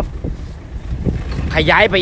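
Wind buffeting the microphone, a steady low rumble, in a pause in a man's speech; he starts talking again about one and a half seconds in.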